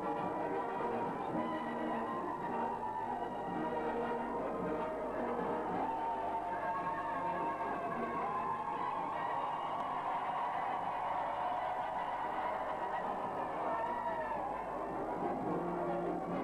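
Brass band music playing steadily, several horns sounding together.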